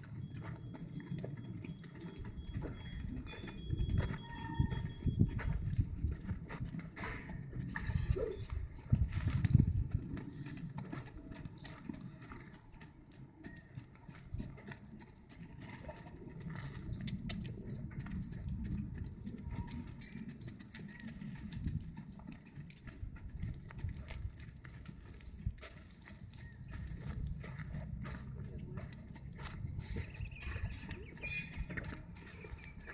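Hoofbeats of a half-Friesian filly and a white horse cantering and trotting loose on sand: irregular dull knocks.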